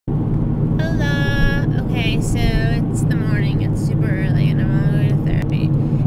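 Steady low rumble of a moving car's engine and road noise inside the cabin, under a woman talking.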